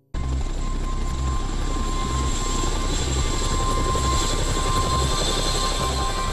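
Helicopter running, a steady loud noise with an uneven low throb from the rotor underneath; it cuts in suddenly at the start.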